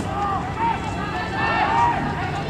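Voices shouting from the trackside, calls to runners passing in a 10,000 m track race.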